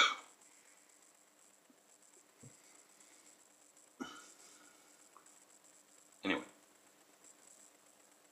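Quiet room, broken about four seconds in by a short vocal sound from a man, with a single spoken word two seconds later.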